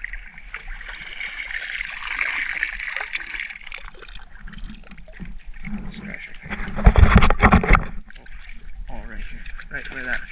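Shallow water sloshing and splashing as a bait net is swept back and forth through grass and muck on the bottom, then lifted out. A louder burst of splashing with low knocks comes about seven seconds in.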